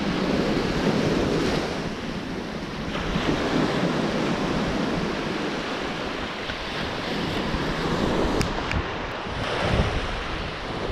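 Small waves breaking and washing up a sandy shoreline, swelling and easing every few seconds, with wind buffeting the microphone.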